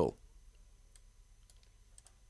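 A few faint, scattered computer mouse clicks against near silence, right after a man's voice trails off.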